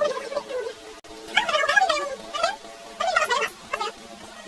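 A singing voice over background music, its held notes wavering in pitch, in short phrases with brief gaps between them.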